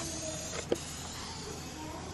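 Quiet, steady background hiss with no clear source, broken by one short sharp click about a third of the way in.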